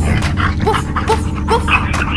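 Cartoon dog barking, three short woofs in a row in time with a children's song's backing music.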